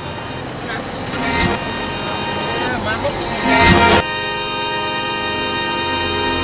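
Motorbike-towed tuk-tuk under way in street traffic: steady engine and road noise with a brief loud burst near four seconds. Background music starts about four seconds in and carries on under the traffic.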